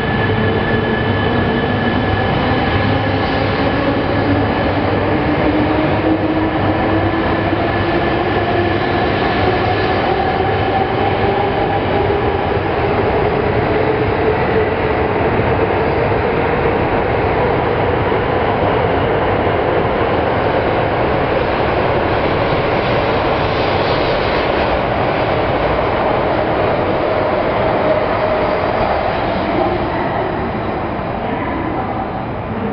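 Coupled E3 and E5 series shinkansen train set running past along the platform, with loud, steady running noise. Over it, the traction motors' whine rises slowly and steadily in pitch as the train picks up speed.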